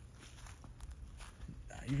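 Faint footsteps on grass, a few soft irregular steps, followed near the end by a man starting to speak.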